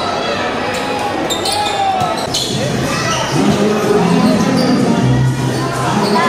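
A basketball bouncing on a hard court amid spectators' chatter and shouts. The voices grow louder in the second half.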